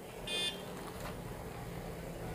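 One short electronic beep from an Orpat desk calculator as it is switched on, then a light click about a second in.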